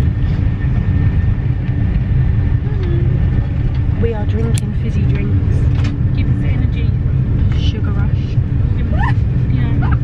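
Steady low rumble inside a Eurostar train carriage, with a constant hum, and passengers' voices chattering faintly in the background.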